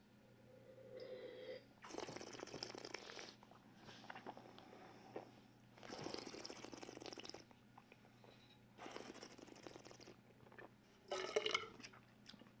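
A person sipping sparkling wine and working it around the mouth: faint slurping and swishing in three breathy bursts a few seconds apart.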